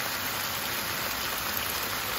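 Beef liver strips, onions and bell peppers sizzling steadily in a frying pan.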